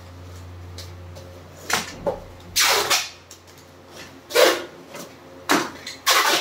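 Brown packing tape pulled and torn off the roll in several short, loud rips while it is pressed onto a cardboard parcel, with cardboard rustling between them.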